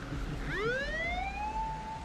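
Police car siren winding up: it starts low about half a second in, climbs quickly and settles into a steady high wail.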